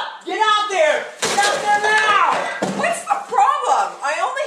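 Loud shouted speech, with a sharp smack about a second in, then a strained, shouting stretch.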